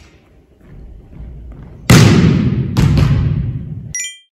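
Volleyball spike practice: a sharp smack of a hand striking the ball about two seconds in, then a second hard impact a moment later, both ringing out in the reverberant gym hall.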